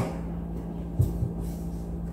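Scissors snipping through a cotton sock, one short sharp cut about a second in followed by light knocks, over a steady low hum.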